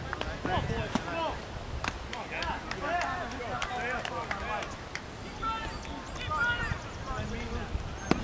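Indistinct talk and calls from players and onlookers across a baseball field, with a few sharp clicks and a steady low rumble underneath.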